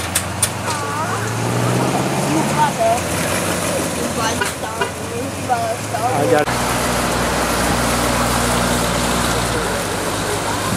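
Classic car engines running at low speed as cars pull out of a lot, with people talking in the background. The sound changes abruptly about six and a half seconds in, to a steadier low engine hum.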